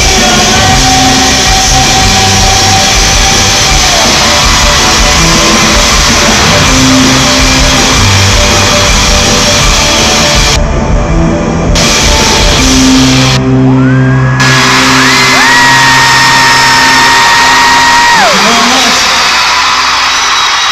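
A live pop-rock band playing loud in a large arena, with electric guitars and drums, heard from among the audience, with fans screaming and shouting over the music.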